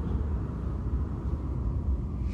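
Steady low rumble of background room noise, with no speech.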